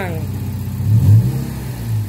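Mazda MX-5 Miata's four-cylinder engine idling, with a short throttle blip about a second in, through a plug-in throttle controller.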